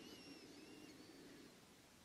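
Near silence: faint room tone with a few faint, high, gliding whistle-like sounds in the first second and a half.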